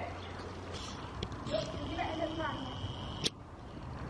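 Quiet stretch of a horse's hooves falling softly on indoor-arena sand, with faint distant voices. A single sharp click comes about three and a quarter seconds in.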